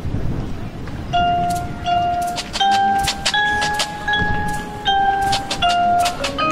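A marching band's front-ensemble mallet percussion begins about a second in: single struck notes, each ringing on, about one or two a second, in a slow rising and falling line. A low rumbling noise comes before it.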